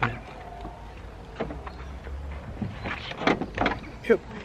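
A car being opened: a few short knocks and rustles from the doors and rear hatch, over a low rumble.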